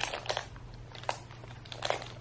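A person chewing a piece of milk chocolate, with a few short, sharp mouth noises: one near the start, one about a second in and one near the end. A low steady hum runs underneath.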